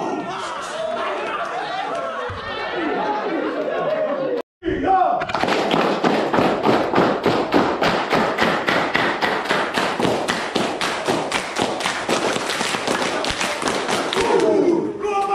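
A group of men's voices chanting and calling out together. After a short break about four and a half seconds in, the group claps in unison at a fast, steady beat, about four to five claps a second, with voices continuing over the claps.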